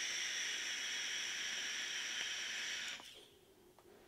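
Vape draw on a Wotofo Flow sub-ohm tank: air is pulled through its airflow slots past the firing coil as a steady hiss for about three seconds, then it stops.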